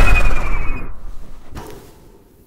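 Cartoon sci-fi sound effect for a flying saucer: a loud, deep rumbling whoosh with a faint whistle gliding slightly down, fading away over about a second and a half. A brief hiss follows near the end.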